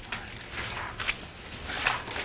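A few short scratchy, clicking strokes at uneven intervals, about four in two seconds.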